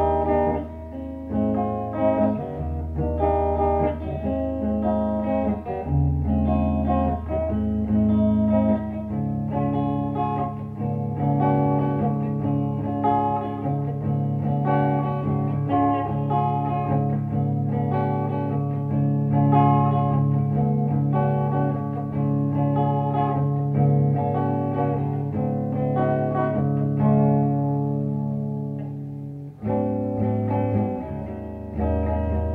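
Guitars playing an instrumental passage of held, ringing chords over a steady low line, with no singing. The sound dips briefly near the end.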